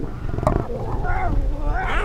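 Lion cubs calling with high, wavering mews over a low rumble, with a sharp click about half a second in.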